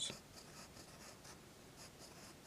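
Pencil writing on a journal page: a faint series of short scratching strokes as the letters are formed.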